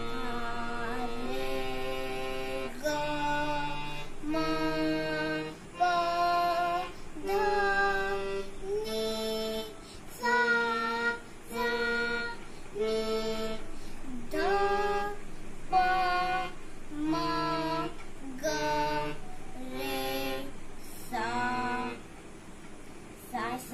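A young child singing a slow melody in held notes, moving to a new note about every second, over a low instrumental accompaniment.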